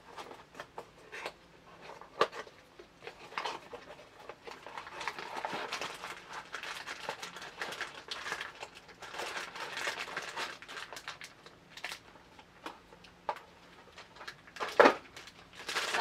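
A cardboard retail box being opened by hand and a tripod in a plastic bag slid out: cardboard scraping and flapping, plastic crinkling, and scattered small taps. One sharp knock comes about a second before the end.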